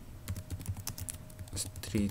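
Computer keyboard typing: a quick, uneven run of keystrokes as a search phrase is entered.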